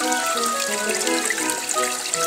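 Background music with held notes, over the steady trickle of a small creek running between rocks.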